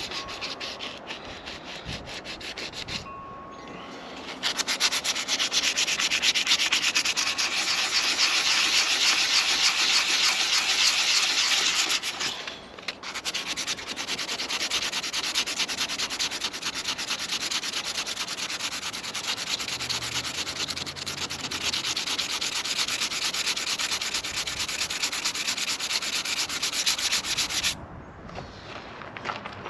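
Sandpaper rubbed by hand over gel coat repair patches on a fibreglass boat hull, in fast, continuous scrubbing strokes, smoothing the filled spots flush. It gets louder about four seconds in and stops briefly about halfway through.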